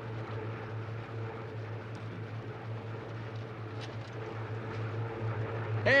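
Propeller fighter plane's engine droning steadily in flight, heard from the cockpit.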